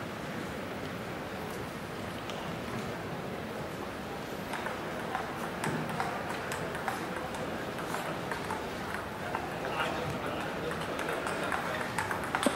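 Table tennis ball clicking in sharp, irregular taps, bounced before a serve and then hit back and forth in a rally near the end. Underneath is the steady murmur of an arena crowd.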